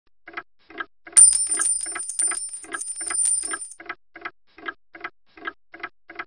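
A clock ticking steadily, about two and a half ticks a second. About a second in, an alarm bell starts ringing loudly and stops after about two and a half seconds, while the ticking carries on.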